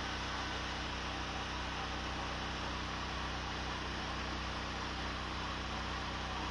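Steady low mechanical hum under an even hiss, unchanging throughout.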